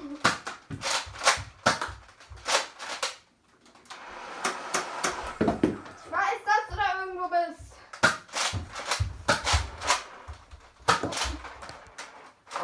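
Toy foam-dart blasters firing: runs of sharp clicks and snaps, about three a second at first and again later. A child's high voice cries out about halfway through.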